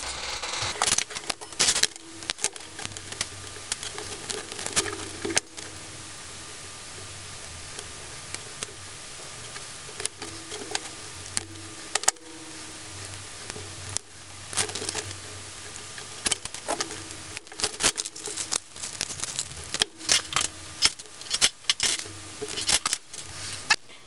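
Small clicks and taps from handling an LED lamp's bare LED circuit board and plastic housing on a workbench. The clicks are irregular, with a quieter stretch in the middle where only a faint low hum remains.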